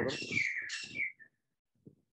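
Birds chirping and calling in a steady high chorus. It ends about a second in with a short falling note, heard over a video call's audio.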